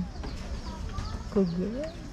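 Outdoor ambience: faint, short high bird chirps scattered over a low rumble, with a short exclamation of 'oh', rising in pitch, near the end.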